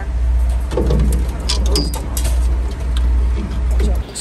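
A steady, loud deep rumble, with a few light clicks and faint voices over it.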